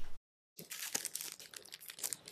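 Rustling and crinkling of craft-kit materials being handled on a table, with scattered soft clicks. A short gap of complete silence falls about a quarter second in.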